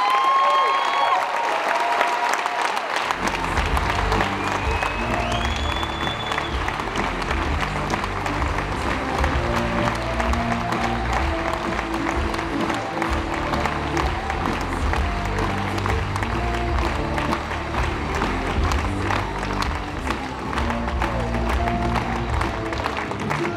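A large audience applauding and cheering, with a whoop right at the start. Music with a heavy bass beat comes in about three seconds in and plays on under the applause.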